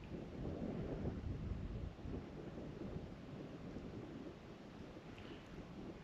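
Wind buffeting the microphone: an uneven low rumble, strongest in the first couple of seconds, then easing off.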